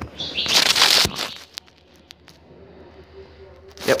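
Rustling handling noise of the camera being picked up and moved, skin and fingers rubbing close to its microphone, with a couple of sharp clicks about a second in; then a quiet stretch of low hiss until a short spoken word near the end.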